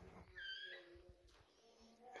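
Near silence with one faint, short cat meow about half a second in.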